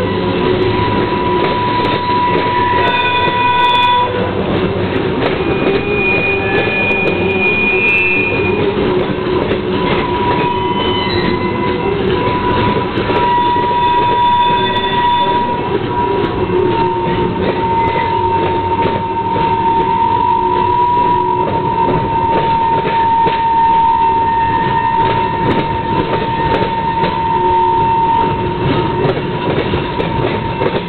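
Freight train cars rolling past: a loud, steady rumble and clatter of steel wheels on rail, with high, drawn-out squealing tones from the wheels that come and go as the cars pass.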